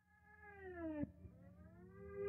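Faint background music fading in: a sliding tone that falls for about a second and then climbs again, over a low steady drone.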